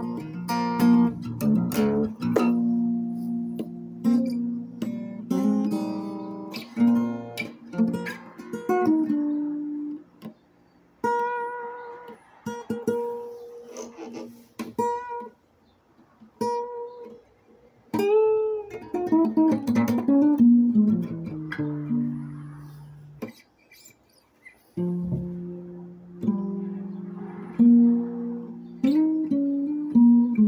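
Acoustic guitar played fingerstyle, picked single notes and ringing chords. About two-thirds of the way through, one note is bent up and back down. The playing breaks off briefly a few times, with the longest pause near the end before it starts again.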